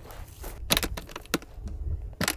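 A handful of sharp plastic clicks and knocks, bunched about half a second to a second and a half in, as the latches and body of a Nature's Head composting toilet are handled and undone, over a low wind rumble on the microphone.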